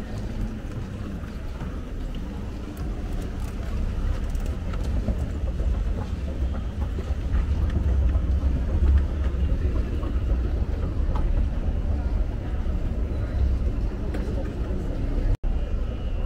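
Low steady rumble of an escalator in a large terminal hall, with an indistinct murmur of passengers' voices. The sound cuts out for an instant near the end.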